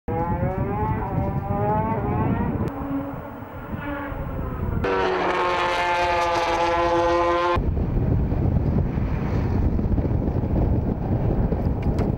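Racing motorcycle engine heard in short edited segments: first rising in pitch as it revs, then held at high revs for about three seconds before cutting off abruptly. A steady rushing noise fills the last few seconds.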